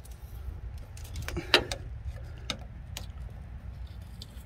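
A few faint clicks and scrapes, the loudest about one and a half seconds in, as a flat screwdriver is worked around the sleeve joint on a fryer's drain pipe to free it, over a low steady rumble.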